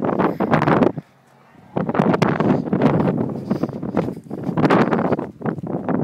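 Wind buffeting the camera microphone in uneven gusts, with a short lull about a second in.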